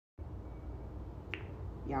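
A single sharp click over a low, steady background rumble, then a woman's voice begins near the end.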